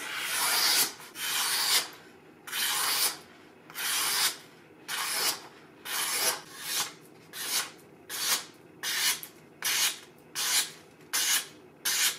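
A freshly sharpened Japanese deba knife slicing strips off a sheet of paper held in the air, a test of its edge. About a dozen rasping swishes of blade through paper, each under a second, coming shorter and quicker toward the end.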